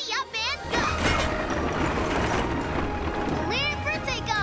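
Cartoon soundtrack: music under a busy mechanical rattling and rumbling noise, with short chirping calls in the first moment and again near the end.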